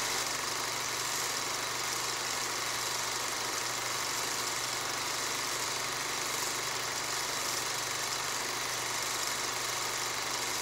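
A steady, unchanging hiss with a low hum beneath it.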